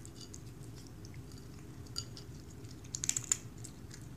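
A cat eating wet canned cat food, with small sharp wet clicks of chewing and licking: one about two seconds in and a quick run of several, the loudest, just after three seconds.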